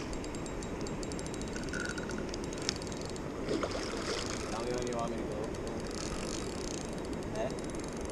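Steady rush of river water with a rapid, fine clicking through the first half: a spinning reel's drag giving line to a hooked salmon, the drag set loose so the fish can run and tire.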